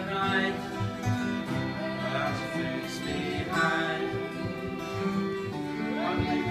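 Live acoustic guitar strummed with a fiddle bowing the melody over it, an instrumental passage in a folk song.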